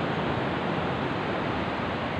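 Steady rush of surf breaking on a sandy beach.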